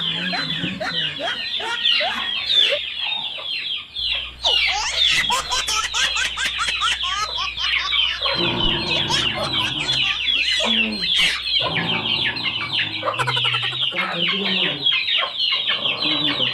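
Chickens clucking and cheeping: a dense, unbroken run of short falling calls crowding on one another.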